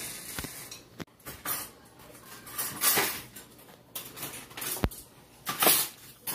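Plush toys rubbed and bumped against the blanket and the phone's microphone: irregular rustling and scraping with a few sharp clicks and one dull thump a little before the end.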